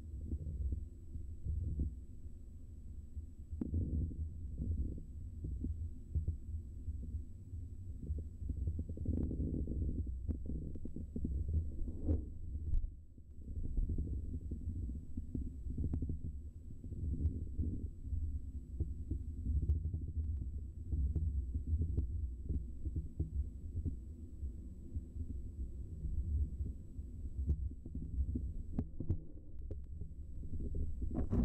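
Low, uneven rumble of canal water flowing past an underwater camera, heard through its housing, with faint scattered ticks and a thin steady high whine.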